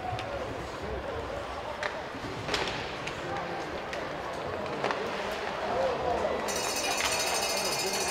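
On-ice hockey sound in an arena: skates on ice and a few sharp clacks of stick or puck, about two seconds in, half a second later, and again about five seconds in, over a background of voices.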